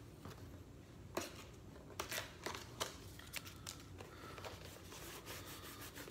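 Faint crackles and light clicks of a cardboard mailing box being handled at its adhesive flap, scattered mostly between about one and four seconds in.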